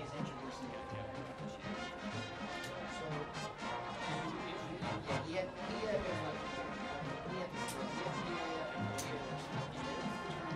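High school marching band playing: brass and woodwinds over a front ensemble of mallet percussion and timpani.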